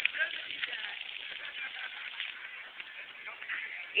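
Faint, distant children's voices and shrieks over a steady background hiss.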